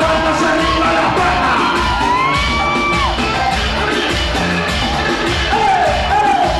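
Live band-and-DJ music played loud over a club sound system, with a steady beat, a vocalist on the microphone and the crowd cheering. About two seconds in, a long high held note rises, holds for about a second and drops away.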